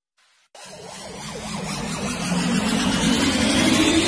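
Build-up sound effect of an animated video intro. After about half a second of silence, a rushing noise swells steadily louder to the end, with a faint tone climbing in pitch, leading into electronic dance music.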